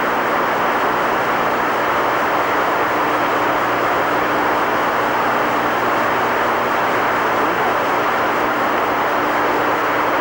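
Steady rushing hiss of an open air-to-ground radio channel between transmissions, with a faint low hum underneath.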